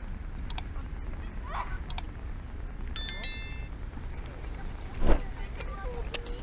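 Outdoor ambience on a busy foot and cycle path: a steady low rumble with faint passing voices. A bicycle bell rings about three seconds in, and a short, loud bump comes near the end.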